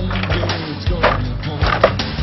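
Background music with a steady low bass line, cut across by a couple of sharp knocks or clatters, one about a second in and one near the end.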